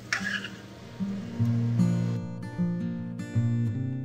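Background acoustic guitar music: plucked notes, with strums near the middle.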